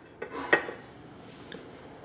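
A small ceramic bonsai pot set down onto a glazed ceramic stand, giving one sharp clink about half a second in after a brief scuff.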